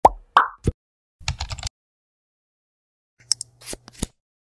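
Intro sound effects for an animated channel logo: three quick plops in the first second, a short rattle of ticks around a second and a half in, then a few clicks and a brief hiss near the end.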